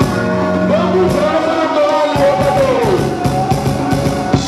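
Live band music with a male singer holding a long, wavering note that slides down about three seconds in.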